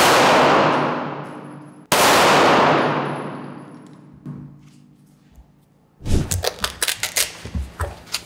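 Two gunshots about two seconds apart, fired through a car windshield into a clay block. Each shot is followed by a long echo dying away in a large hall. Near the end comes a quick run of knocks and clatter.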